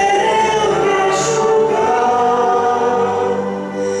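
A woman sings a slow Romanian Christian song into a microphone, holding long notes, over electronic keyboard accompaniment.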